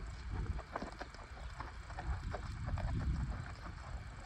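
Wind rumbling on the microphone, with faint irregular knocks from a horse stepping through sand.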